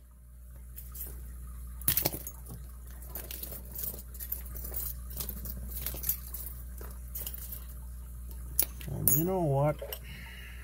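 Small metallic clicks and clinks of lock picks, a tension tool and a padlock being handled, with a sharper clink about two seconds in. Near the end, a man's drawn-out voice wavers up and down in pitch.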